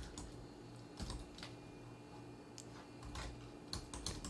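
Keys on a Dell Inspiron 3800 laptop keyboard being typed slowly and unevenly, a handful of separate faint key clicks over a low steady hum.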